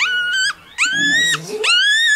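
One-day-old Miniature Pinscher puppy crying while held in the hand: three high-pitched squeals in a row, each about half a second long.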